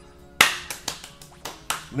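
Five sharp percussive hits at uneven spacing, the first and loudest about half a second in, over faint background music.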